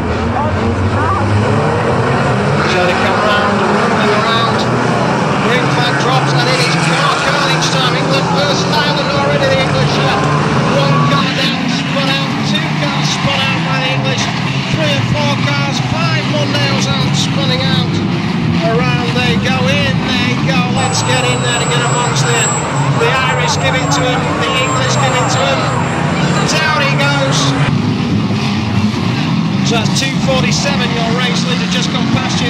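Several banger-racing cars racing together, their engines revving hard and unevenly, with frequent bangs of cars hitting each other, and voices in the background.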